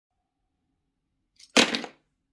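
A single sudden burst of noise about one and a half seconds in, fading away within half a second, with a faint tick just before it.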